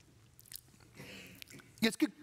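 A pause in a man's speech, heard close on his headset microphone: a faint mouth click and a short breath over low room tone, then he starts speaking again near the end.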